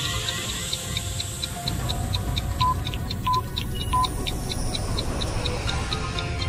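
Intro music with a clock ticking steadily about four times a second over a low rumbling bed, and three short beeps near the middle.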